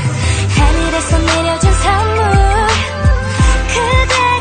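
A K-pop hip-hop/R&B duet track in an instrumental stretch: a steady beat of deep bass kicks that drop in pitch on each hit, about two a second, under a wavering lead melody.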